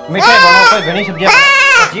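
Young goat bleating twice, two loud calls each a little over half a second long.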